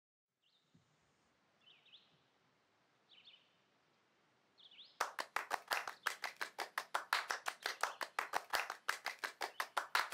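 A few faint, short bird chirps, four calls spaced about a second apart. Then, from halfway through, a loud, fast, irregular run of sharp clicks or cracks, several a second.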